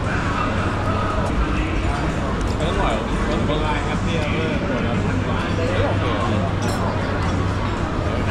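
Indistinct chatter of many diners in a busy restaurant, running steadily over a low hum.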